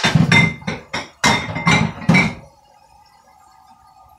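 Dishes being washed by hand in a kitchen sink, clinking and knocking together in a quick run of strikes over the first two and a half seconds.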